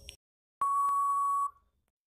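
Quiz countdown timer sound effect: a last tick, then a single steady high beep that lasts nearly a second and signals that the time to answer is up.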